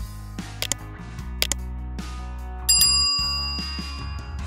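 Background guitar music with a steady beat, and a single bright bell ding a little past halfway that rings on and fades: the notification-bell chime of a subscribe-button animation.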